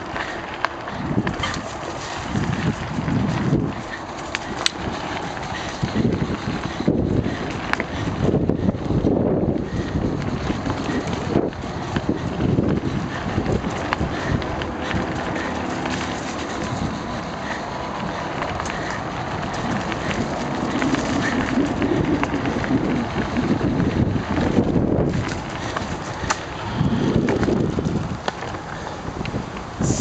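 Mountain bike ridden along a dirt single-track trail, heard from a camera on the move: steady wind noise on the microphone with uneven low rumbling swells, and a few sharp knocks and rattles from the bike over bumps.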